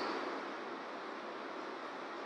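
Quiet, steady hiss of room tone in a pause in speech, with no distinct event.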